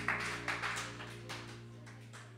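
Applause dying away to a few scattered claps, over a steady low electrical hum.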